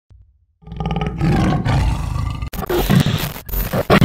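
A loud roar starts about half a second in. After a sudden cut at about two and a half seconds it breaks into choppy, stuttering bits, the sound effects of a glitch-style video intro.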